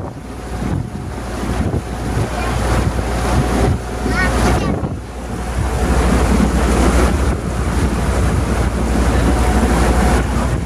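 Wind buffeting the microphone on an open-sided boat under way, with water rushing past the hull and a steady low rumble.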